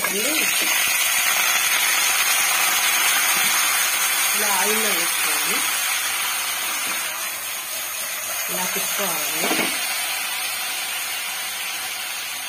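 Cut brinjal pieces dropped into hot tempering oil in an aluminium pot and sizzling, loudest at first and slowly dying down.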